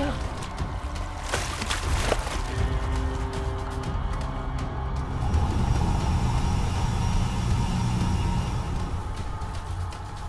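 Film soundtrack: a low, rumbling music drone with held tones, and two sharp hits about a second and two seconds in.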